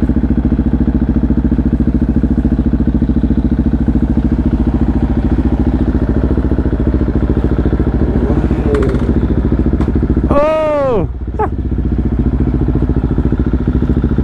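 KTM 690 Duke's single-cylinder engine with an Akrapovic exhaust idling steadily in even firing pulses. About ten seconds in, a brief sound rises and falls in pitch over it.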